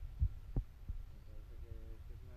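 Low rumble with a few soft, dull thumps in the first half, and a faint voice in the background in the second half.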